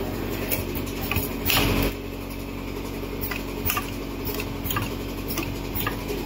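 Automatic bottle-capping machine running: a steady mechanical hum with irregular clicks and clinks as bottles move through the starwheel and capping heads, and a short, louder burst of noise about a second and a half in.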